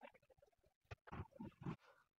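Near silence, with a few faint, soft handling noises in the second half as hands shape and set down balls of oat cookie dough.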